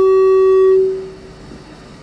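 Loud, steady feedback tone from the handheld microphone's sound system, a single unwavering pitch with overtones, cutting off a little under a second in and leaving low room noise.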